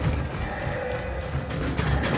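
Tense film score with a held tone over a pulsing low beat, mixed with rhythmic thuds of a riot squad's boots going down metal stairs.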